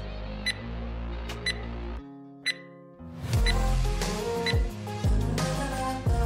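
Background workout music with a short high tick once a second, marking a countdown timer. About two seconds in, the music drops out briefly. About three seconds in, a louder, fuller music track starts.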